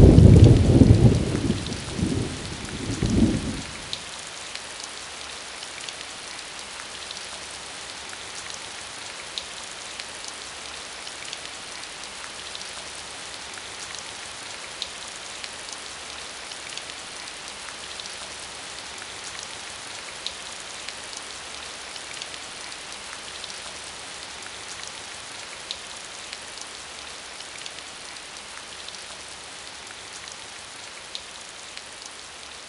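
Steady rain with scattered drop ticks. A loud low rumble fades out over the first four seconds.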